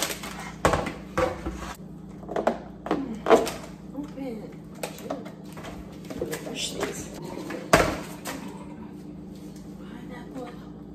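Kitchen handling noise: a plastic bowl and containers knocked and set down on the counter, several sharp knocks, the loudest about eight seconds in.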